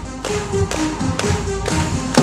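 Live band playing an instrumental passage without vocals: a melody of short held notes over a light, regular tapping beat at about two taps a second.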